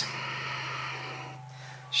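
A woman's long, soft, audible exhale that fades out over about a second and a half, over a faint steady low hum.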